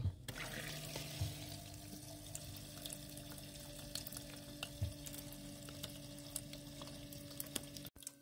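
Small battery-powered tabletop succulent fountain switched on and running: water trickling steadily over its resin rock, with a steady low pump hum and scattered small drips.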